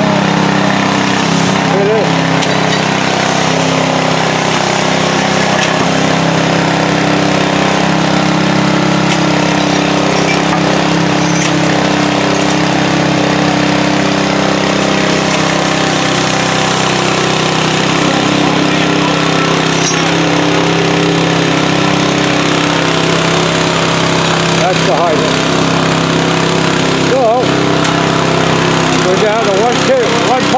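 An engine running steadily at an unchanging speed, with faint indistinct voices now and then.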